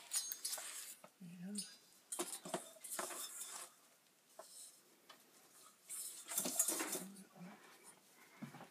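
Handling noise from unpacking a metal dome light fixture from a cardboard box: quiet scattered clicks and light metallic clinks with rustling of packaging, pausing for a couple of seconds midway.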